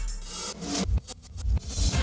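Electronic music with heavy drum hits and a swelling whoosh.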